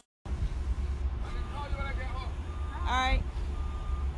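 City transit bus idling at a stop, a steady low engine rumble, with a high steady beep sounding briefly about a second in and again from about three seconds on.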